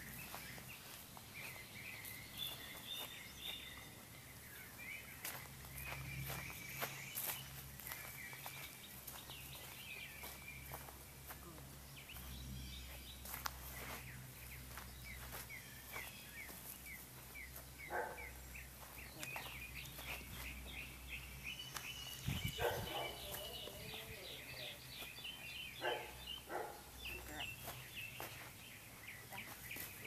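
Songbirds chirping and trilling over and over in the background, with scattered footsteps and shuffling on grass and dirt.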